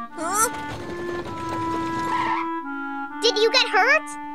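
Cartoon background music with held notes, under a noisy sound effect that lasts about two and a half seconds. A character gives a short vocal sound near the start, and there is brief cartoon voice chatter near the end.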